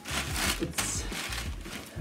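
Cloth rustling and rubbing as a linen-blend suit jacket and its packaging are handled, in a few irregular swishes, with soft background music underneath.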